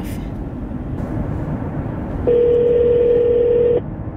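Telephone ringback tone of an outgoing call, one steady ring about a second and a half long starting about two seconds in, over steady road noise inside a moving car.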